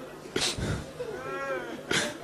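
A person's short wavering cry, rising and then falling in pitch, about halfway through, between two sharp sob-like breaths.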